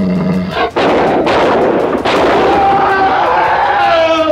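Horror-film soundtrack excerpt. A low growling voice ends about half a second in. Then comes a sudden loud noisy burst that fades over a couple of seconds, and after it a long held high cry.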